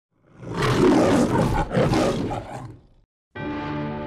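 A lion's roar in two long surges, as in the MGM studio lion logo, fading out about three seconds in. After a brief silence, a held music chord begins near the end.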